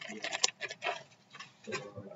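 Irregular light clicks and taps with faint voices murmuring in the room.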